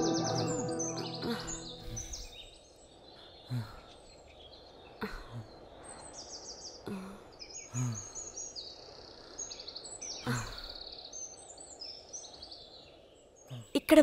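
Background music fading out over the first two seconds, then quiet outdoor ambience with birds chirping again and again in short high trills. A few soft low thumps come in between.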